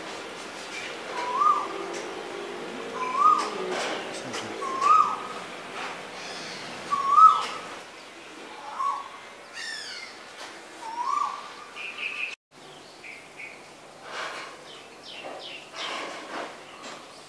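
A bird repeating one short call note that rises in pitch, about every second and a half to two seconds, seven times, over scattered higher chirps from other birds. The sound cuts out abruptly about twelve seconds in, after which only scattered chirps remain.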